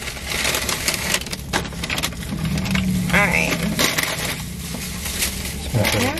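A plastic carry-out bag and the paper bags inside it rustling and crinkling as takeout food is unpacked by hand, with a brief voice sound about three seconds in.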